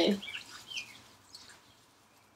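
A few faint, short bird chirps.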